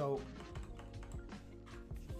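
Computer keyboard typing, a few scattered keystrokes, over Chillhop background music.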